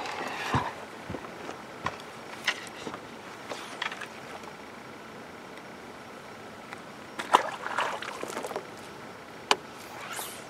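Handling noise on a boat as a small fish is landed on a fly rod: a few scattered sharp clicks and knocks over a steady background hiss, the sharpest about seven and a half and nine and a half seconds in.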